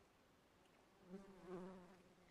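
Faint wingbeat buzz of a flying insect. The low, steady-pitched drone starts about a second in, swells and then fades, as if the insect is passing close by.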